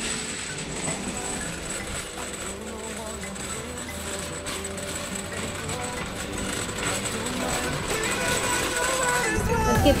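Background music laid over the footage, getting louder near the end.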